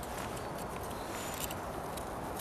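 Steady outdoor background noise, with a few faint clicks of a pocket knife blade cutting into a small vegetable about one and a half seconds in.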